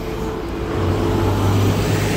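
Jet airliner flying low overhead: a steady roar with a held mid tone, growing a little louder in the second second, with street traffic beneath it.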